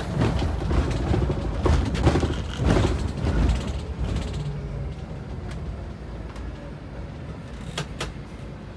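Scania coach running, heard from inside the cab: a low engine and road rumble with rattles and knocks through the first half, quietening after about four and a half seconds as the coach slows.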